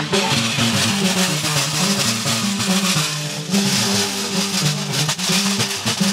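Instrumental stretch of Malian hunters' (donso) music: a donso ngoni harp plucking a repeating low figure over a steady percussion beat.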